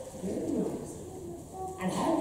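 A man's low, wavering vocal sound, with speech starting again near the end.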